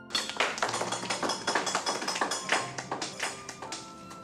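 Dense, rapid, uneven tapping and clicking with music under it, starting suddenly; near the end it gives way to held musical notes.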